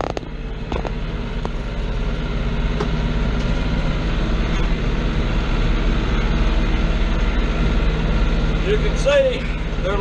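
New Holland TN70 tractor's diesel engine running steadily while tilling, heard from inside the cab. There are a few sharp clicks in the first second and a half, and a man's voice starts near the end.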